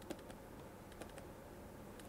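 Faint taps of a stylus on a pen tablet while handwriting: a few light ticks, one near the start and one about a second in, over low steady hiss.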